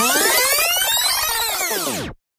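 Electronic synthesizer sweep: a dense cluster of tones that glide upward in pitch and then back down, cutting off at the end.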